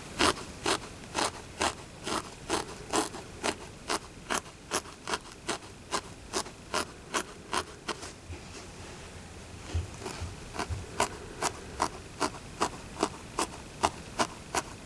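A felting needle stabbing repeatedly through loose animal fur into the felting pad beneath, a steady rhythm of short, crisp pokes at about two a second.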